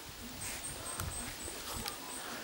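Outdoor ambience in grass and trees: a steady high-pitched chirring, with a few light clicks and a low rumble in the middle.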